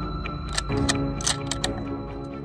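Tense soundtrack music, with a quick run of sharp metallic clicks between about half a second and a second and a half in: the bolt of a scoped bolt-action rifle being worked.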